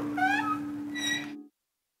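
A short, high meow-like gliding call, rising then falling, over a held background music note, followed about a second in by a brief high ringing tone. The sound then cuts off abruptly to silence.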